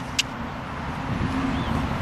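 Steady low outdoor rumble, with two short sharp clicks right at the start.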